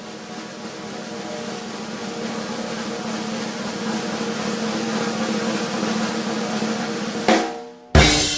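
Snare drum roll in a rock band recording, building steadily louder over held notes. It ends on a sudden accented hit about seven seconds in, and the sound then drops away briefly.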